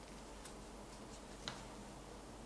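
Quiet room tone with a few faint, light clicks, the clearest about one and a half seconds in.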